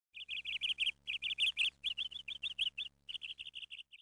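A small bird chirping: rapid runs of short, high chirps, about seven or eight a second, in four bursts broken by brief pauses.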